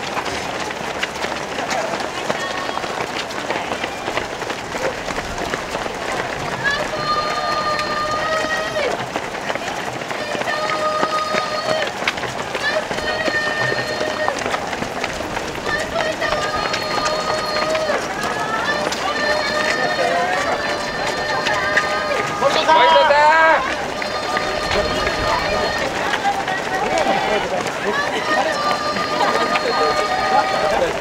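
Running footfalls of a large crowd of marathon runners on the road, a steady patter. Over it come long, steady, high-pitched calls that repeat every couple of seconds, and one louder wavering call at about 23 seconds in.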